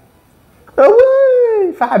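A single high, drawn-out howling cry, about a second long, that starts suddenly near the middle, rises a little in pitch and then slides down.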